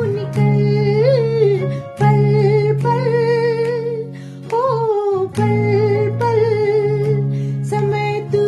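A woman singing a slow melody with wavering vibrato and sliding ornaments, over a steady accompaniment of sustained low notes.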